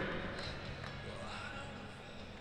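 Arena ambience: the steady hum of a large, echoing hall with faint distant voices, slowly fading.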